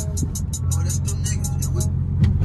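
Music playing over the car stereo with a quick ticking beat, over the steady low drone of the Dodge Charger SRT 392's 6.4-litre HEMI V8 at light throttle, heard inside the cabin.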